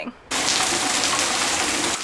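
Heavy rain falling, a steady rushing hiss that starts abruptly just after the start.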